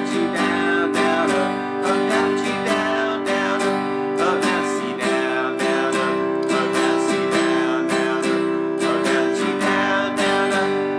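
Acoustic guitar strummed in a steady down, down-up, up, down-up rhythm, playing the G, C and D chords of a 12-bar-blues-style progression.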